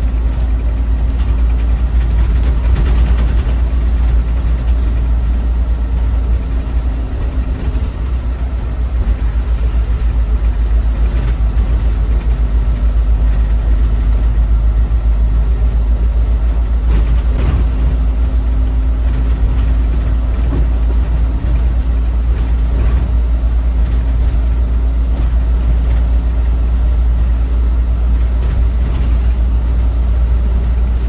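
Autosan Sancity M12LF city bus under way, heard from inside near the driver: a steady low engine and drivetrain rumble with road noise from the wet road. A steady hum runs through it, fading for a few seconds about halfway and then returning.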